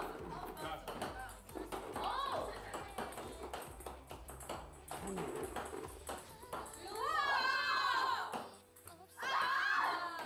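Background music under excited voices, with light taps of a ping-pong ball bouncing on a table as it is bounced towards a row of cups.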